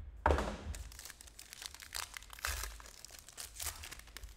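Foil trading-card pack wrapper crinkling and tearing as it is opened by hand, with the sharpest tear about a quarter second in, followed by steady crackling of the crumpled foil.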